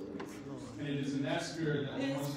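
A man's voice, speaking into a handheld microphone.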